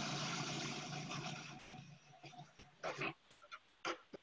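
Food processor running, grinding oats into oat flour, its steady motor hum dying away about halfway through. A few short clicks and knocks follow near the end.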